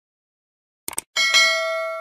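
Sound effects of a subscribe-button animation: a quick double mouse click about a second in, then a notification bell ding struck twice in quick succession, ringing on and slowly dying away.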